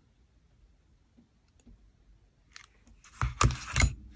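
Nearly quiet at first, then near the end a cluster of knocks and a paper rustle as a clear acrylic stamping block is lifted off a paper card and moved across the craft table.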